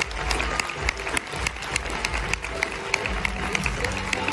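An audience applauding, with many quick, overlapping hand claps, as a winner is announced.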